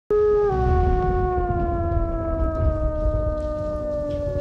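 A wolf howling: one long howl that begins abruptly and sinks slowly in pitch, over a low rumble.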